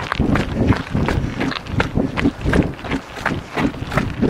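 Running footfalls in a steady rhythm of about four steps a second, picked up by a microphone carried by one of two people running together.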